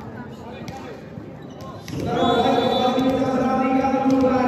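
A volleyball bounced a few times on the hard floor of a sports hall. About halfway in, loud crowd voices start up and carry on, chanting together.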